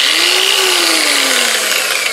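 Griot's Garage G15 15 mm long-throw orbital polisher running free in the air, its variable-speed trigger squeezed on speed setting five. It gives a steady whine and a hum that rises for about half a second, then falls steadily.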